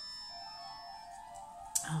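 A telephone ringing with a melodic ringtone of steady notes. A short click comes near the end.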